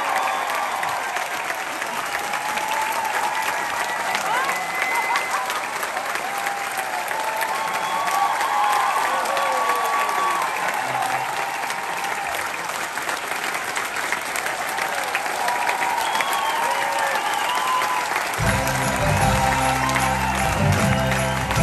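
A theatre audience applauding and cheering, with scattered shouts and whoops over the clapping. Near the end, loud band music with a heavy bass beat starts up under the applause.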